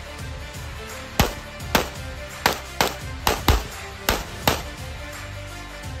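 A 9mm pistol fired in a rapid, uneven string of about eight shots, some paired close together, over background music.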